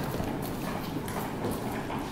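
Wheeled aluminium flight cases rolling across a floor, the casters and metal shells rattling, with a few irregular knocks and footsteps.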